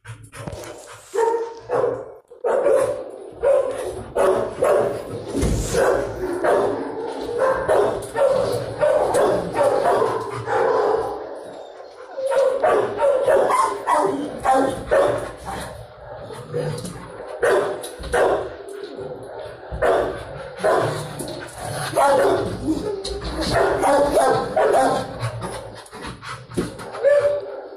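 Kennel dogs barking nonstop, several calls overlapping, with a few brief lulls.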